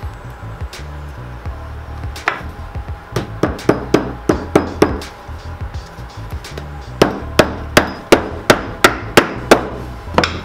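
Shoemaker's hammer tapping small nails through a loafer's insole into the heel block: sharp taps, a run of about three a second a few seconds in, then a louder, steady run near the end.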